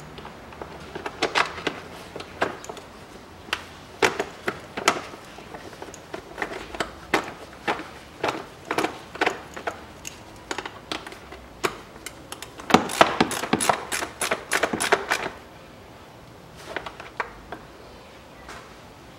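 A ratchet wrench clicking in short strokes with metal clinks as a small bolt is tightened by hand, with a quick run of about ten clicks a little past two-thirds of the way through.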